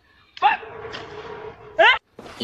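A shocked, shouted 'What?' about half a second in, then a short rising yelp-like cry near the end.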